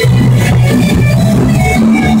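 A rock band playing live and loud: electric guitars over a drum kit, with a steady beat and sustained low notes.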